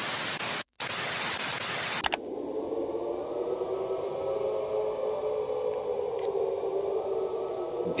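Television static hiss, cut off briefly just under a second in, then stopping after about two seconds. It gives way to a quieter, muffled low hum with faint steady tones.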